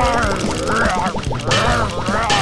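Cartoon soundtrack: music with high, wavering character vocalisations over it, and a burst of hissing noise about one and a half seconds in.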